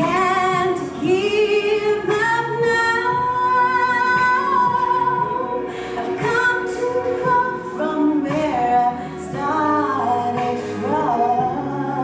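A woman singing a solo into a handheld microphone, holding long notes with a wavering vibrato and sliding between pitches.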